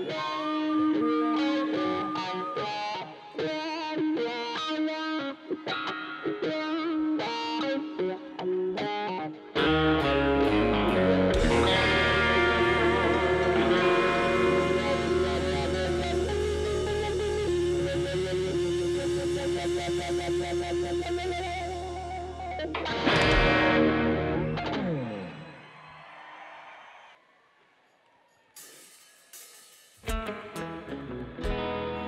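Live rock band: an electric guitar picks a melodic run of single notes. About ten seconds in the full band comes in with a long held chord over bass and drums, then closes with a final hit that rings out and fades near the end.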